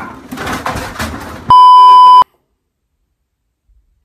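A loud, noisy commotion, cut off about one and a half seconds in by a loud, steady, high-pitched censor bleep lasting under a second.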